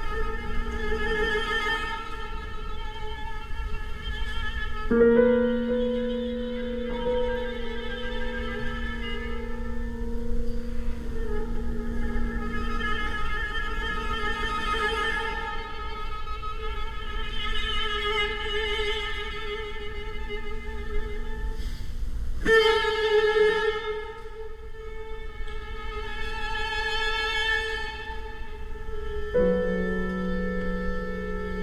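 String quartet of two violins, viola and cello bowing long held chords in a contemporary chamber piece. The chords change suddenly about five seconds in, again about two-thirds of the way through, and once more near the end.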